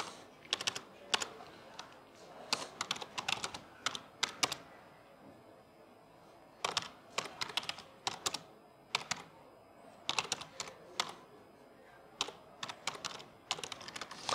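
Computer keyboard being typed on in short bursts of keystrokes, with a pause of about two seconds in the middle.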